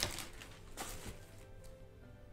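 Quiet background music, with a brief rustle of a plastic zip bag being lifted out of a storage box at the start.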